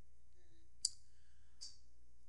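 Two short clicks in a pause: a sharp one a little under a second in and a fainter, higher one about three quarters of a second later, over a low steady hum.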